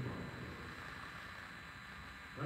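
A pause in speech: a low, steady hiss of room tone and microphone noise.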